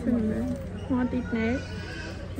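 A young child's voice talking in high, rising and falling pitch, with a steady low electrical hum beneath.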